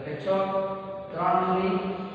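A man's voice speaking in two long, drawn-out, sing-song phrases.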